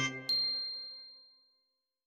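The last note of the background music dies away, then a single high, bell-like ding is struck and rings out, fading over about a second.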